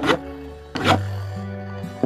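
Two sharp knocks, the first just after the start and the second about a second in, as a small plastic spinning top is launched and strikes a wooden tabletop. Background music plays throughout.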